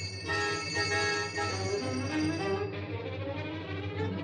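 A row of small hanging call bells jangling together for about the first two and a half seconds, over orchestral film score that carries on after the ringing stops.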